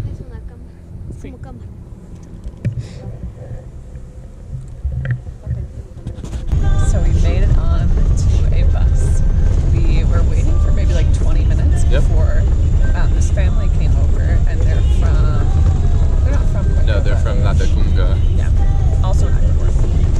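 A passenger bus's engine and road noise heard from inside the cabin, a loud steady low rumble that starts suddenly about six seconds in, with voices over it. Before that, quieter roadside ambience with wind.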